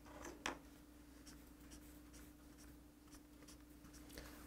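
Faint strokes of a felt-tip highlighter marking lines of text on a book page, over a low steady hum.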